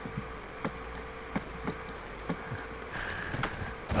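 Steady faint electrical buzz with a low hum underneath, and a few light computer clicks scattered through it.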